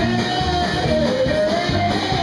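Live rock band playing with guitar and a steady beat, a melody line rising and falling over it.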